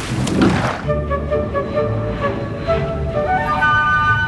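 Background music of long held notes, the melody stepping higher near the end, over a low rumble; it opens with a short rushing noise.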